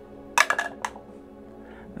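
A six-sided die thrown into a dice tray, clattering in a quick run of several clicks about half a second in.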